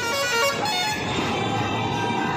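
Music with a vehicle horn sounding one long steady note from about halfway through, over busy street noise.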